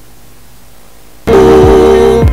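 Electronic backing track: after about a second of low hiss, a loud held synthesizer chord cuts in suddenly, with deep bass notes sliding down in pitch beneath it.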